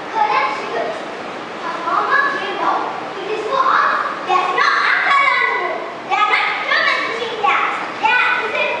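Children's voices speaking and chattering.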